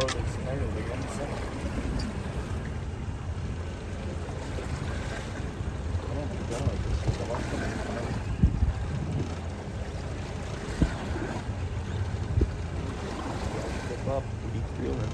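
A fishing boat moving slowly on open lake water: a steady low rumble of motor and water, with wind on the microphone. A few dull knocks come about eight and a half, eleven and twelve seconds in.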